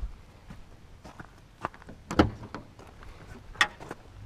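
Jeep Wrangler's swing-out tailgate being unlatched and opened: a few sharp clicks and clunks from the handle and latch, the loudest about two seconds in and another near the end.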